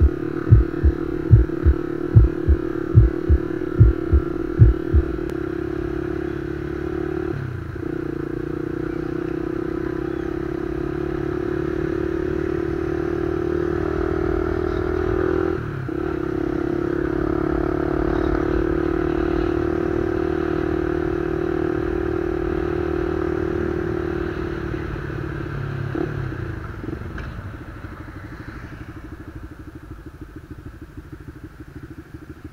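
Honda Winner 150 single-cylinder engine with an aftermarket exhaust (baffle removed) running steadily at cruising speed, heard from the rider's seat. The note dips briefly at gear changes about 7½ and 16 seconds in, and the engine eases off and gets quieter in the last few seconds.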